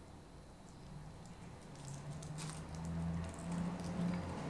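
Faint crinkling and rustling of paper-and-plastic medical packaging as a syringe wrapper is handled and opened. A low steady hum comes in about a second in and grows louder toward the end.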